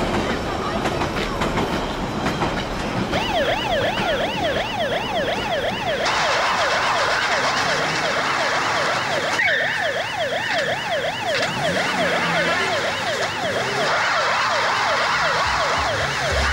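Police car siren in a rapid up-and-down yelp, starting about three seconds in.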